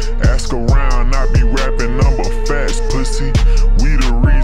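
Chopped and screwed hip hop track: slowed, pitched-down rapping over deep bass hits that slide down in pitch, with a held synth note and hi-hats.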